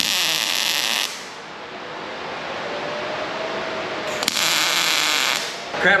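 Two short arc welds on thin 16-gauge steel tube, likely tacks, each a loud hiss about a second long: one at the start and one about four seconds in. A quieter hum runs between them.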